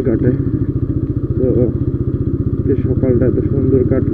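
TVS Apache RTR 160's single-cylinder motorcycle engine running steadily at low speed, an even, rapid stream of firing pulses.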